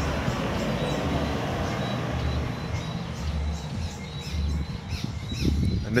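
A pickup truck drives past on the road, its noise fading away over the first few seconds. Birds chirp faintly after that.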